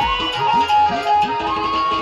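Bangladeshi baul folk music, instrumental passage: a steady, stepwise flute-like melody over a hand drum whose bass strokes bend downward in pitch, about three strokes a second.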